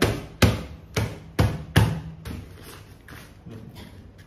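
Sharp knocks and thumps as a loaded hiking backpack is pressed down and shifted by hand: about five in the first two seconds, then quieter handling.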